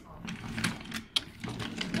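Small toy train engine pushed by hand along wooden track: its wheels rumble on the wood, with a few clicks as they run over the track joints, the sharpest just after a second in.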